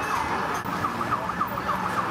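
Siren-like wailing, a quick run of short swooping tones, about three or four a second, with a low held note coming in near the end.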